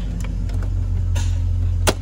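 Car's engine running steadily, heard from inside the cabin as a low hum, with one sharp click near the end.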